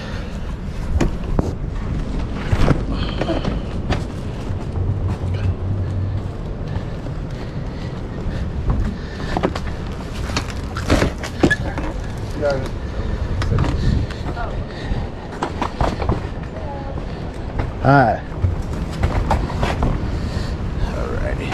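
Handling noise from a fabric-upholstered couch section being carried, with the upholstery rubbing against the microphone, a steady low rumble and irregular knocks and bumps. Brief muffled voices come through about halfway and near the end.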